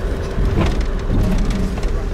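Safari vehicle driving over a rough gravel track, heard from inside the cabin: a steady low engine and road rumble with continual rattling and crunching from the stones and bumps.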